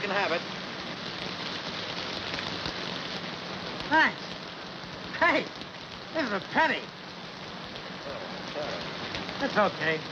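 Steady rain falling, an even continuous hiss.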